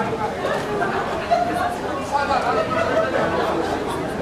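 Indistinct talking and chatter from several people.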